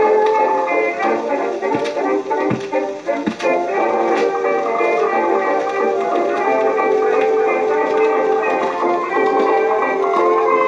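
A 1922 dance orchestra recording played from a 78 rpm record, the music thin and narrow in range, without deep bass or bright treble. A few sharp clicks come through about two to three seconds in.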